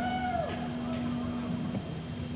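Steady electrical hum from a live stage's amplification in a pause in the playing, with one short wail that rises and then falls in pitch in the first half-second.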